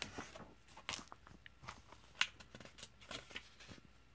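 Comic book pages being turned by hand: a run of paper rustles and crinkles, with one sharper snap a little past two seconds in, stopping shortly before the end.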